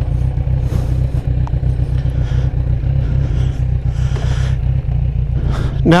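Fuel-injected, liquid-cooled 1,043 cc motorcycle engine with an Akrapovič aftermarket exhaust, running at low revs with a steady deep rumble as the bike pulls away slowly.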